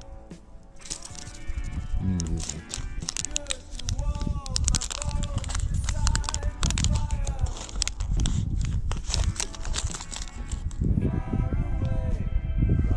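Music with a singing voice.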